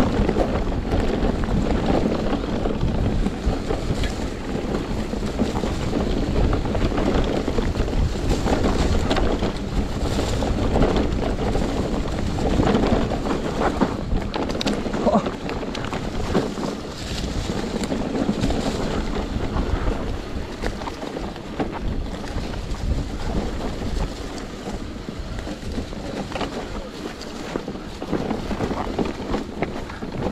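Wind buffeting the microphone over the rumble of knobby mountain-bike tyres rolling down a dry dirt singletrack, with scattered short knocks and rattles from the bike over roots and stones.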